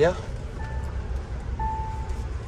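Mahindra Thar's dashboard warning chime beeping one steady tone twice, about a second apart, over the low rumble of the engine and road inside the cabin.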